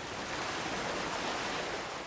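A steady, even rushing noise, a sound effect laid over an animated logo end card.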